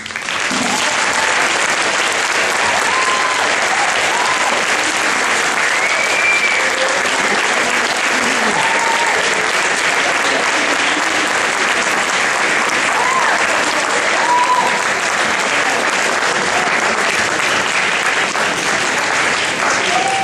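Audience applauding steadily for 20 seconds, with a few short whoops rising over the clapping.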